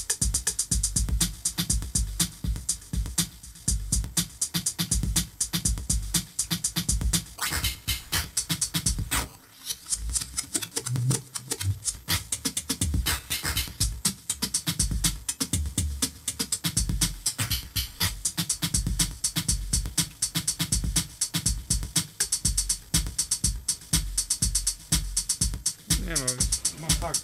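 Homemade electronic drum machine playing a fast, dense beat of deep bass hits and crisp high ticks, its tempo just sped up. The beat briefly drops away about nine and a half seconds in.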